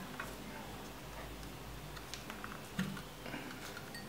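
Scattered light clicks and taps of plastic thermostat controller units and sensor-probe cables being handled on a tabletop, with one louder knock a little under three seconds in.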